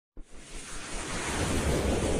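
Rushing, wind-like noise from an animated logo intro's sound effect. It starts abruptly just after the beginning and swells steadily louder.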